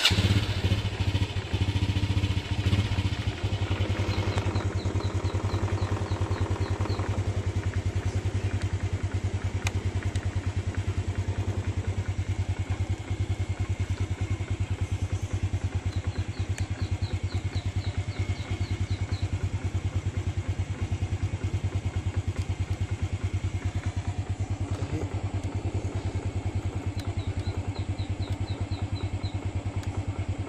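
Honda Wave 100's small single-cylinder four-stroke engine idling just after starting: a little uneven for the first few seconds, then a steady, even idle. Three short runs of faint high chirping sound in the background.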